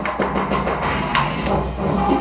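Electronic bass music from a live DJ set played over a club sound system: a quick, steady drum beat over heavy, sustained sub-bass.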